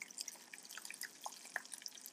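Faint, irregular small pops and crackles of crab balls deep-frying in a pot of hot oil.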